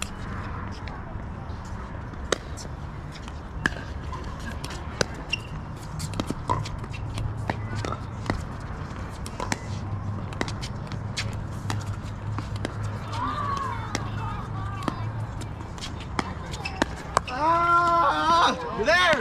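A pickleball rally: paddles striking the plastic ball with sharp pops about once a second, irregularly spaced, over the low steady hum of an indoor hall. Faint voices come from around the courts, and a voice calls out near the end.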